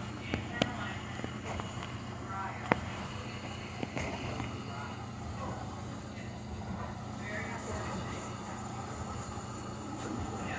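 Sharp clicks and knocks of a phone camera being handled and set in place, mostly in the first four seconds, over a steady low hum, with faint voices in the background.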